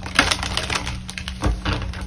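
A deck of tarot cards being shuffled off-camera: a rapid run of dry clicks and papery rustles, with louder knocks about a quarter second in and again around a second and a half.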